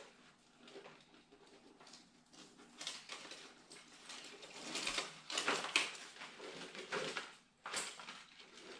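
Hands rustling and crinkling the tags and packaging on a new motocross helmet as they are pulled off: faint at first, then irregular bursts of rustling from about three seconds in until near the end.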